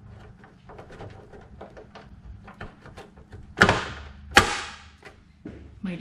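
Metal handling clicks as a powder-coated steel bracket is worked onto the mounting posts of a steel grille, with two sharp metal knocks about three and a half and four and a half seconds in. The bracket is slightly off center, so it does not slip onto the posts easily.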